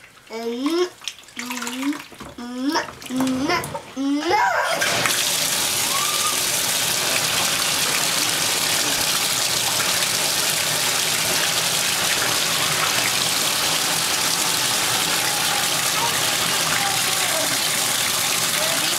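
Water running steadily from a tap into a bathtub. It starts abruptly about four and a half seconds in and holds an even hiss. Before it come a few short, high-pitched vocal sounds.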